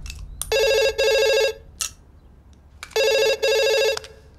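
Phone ringing with a classic telephone-style double ring, twice: each ring is two quick pulses lasting about a second, the second ring coming about two and a half seconds after the first.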